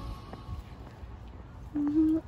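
Background music dies away, leaving faint outdoor ambience with a few light ticks. Near the end a person begins humming a steady low note.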